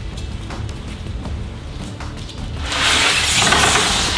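Background music, with a loud burst of hissing noise that swells up over the last second and a half.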